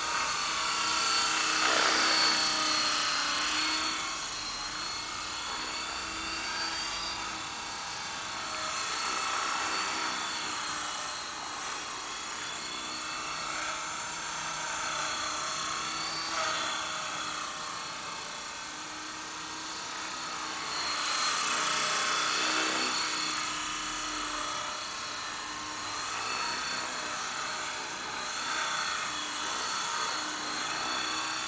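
E-sky Belt-CP electric radio-controlled helicopter in flight: a steady high motor and gear whine over the whir of its rotor blades. It swells louder about two seconds in and again around twenty-two seconds, easing off between.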